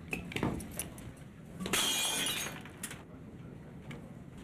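Glass smashing: a few small knocks, then one loud shattering crash a little under two seconds in, with pieces ringing for nearly a second.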